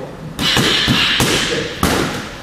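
Boxing gloves striking focus mitts in a quick flurry of punches, several sharp slaps about a second and a half long, the hardest hit near the end.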